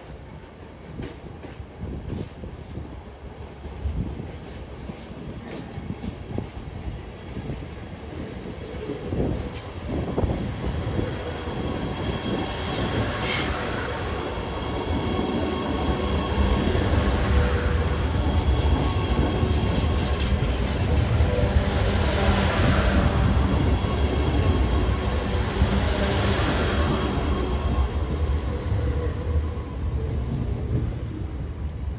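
Sydney Metro Alstom Metropolis electric train coming in over pointwork, its wheels clacking across the switches. It then grows louder and runs close past, with a heavy rumble and a faint squeal from the wheels, loudest in the second half.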